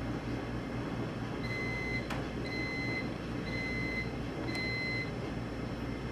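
An electronic beeper sounding four times, about once a second, each a steady high beep about half a second long. A single click comes between the first and second beeps, over a steady background hum and hiss.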